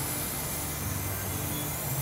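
Oxy-fuel heating torch burning with a steady hiss, used to heat the high spot of a bent pump shaft and straighten it.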